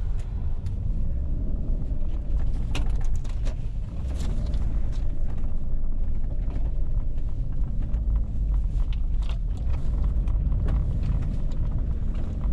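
A Subaru car, heard from inside the cabin, ploughing through deep snow: a steady low rumble from the engine and tyres, with many scattered knocks and thumps as the car jolts along.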